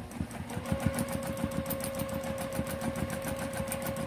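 Juki TL-2010Q sewing machine starting up and stitching at a steady speed: fast, even needle strokes over a steady motor whine. This is free-motion quilting, with the feed dogs dropped and the quilt guided by hand.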